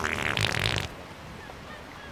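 A loud prank fart noise, starting abruptly and lasting just under a second.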